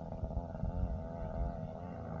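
Wind buffeting the microphone in gusts, with a steady pitched drone underneath whose pitch wavers slightly.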